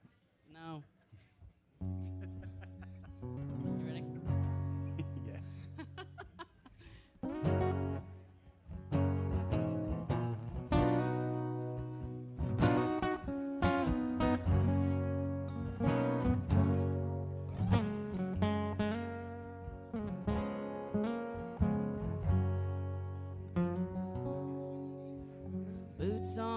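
Acoustic guitar playing a song's instrumental intro. It comes in about two seconds in over held low bass notes and gets fuller and louder from about seven seconds in.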